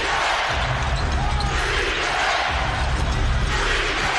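A basketball is dribbled on a hardwood court under a loud, steady arena crowd noise.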